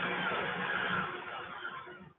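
Steady rushing noise from the film's soundtrack, like city traffic or a whoosh, that fades away in the last half-second.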